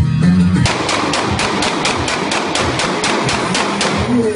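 Dance music, then about half a second in a rapid, even string of sharp bangs, about five a second, over a dense hiss. The bangs go on for about three seconds and drown out the music.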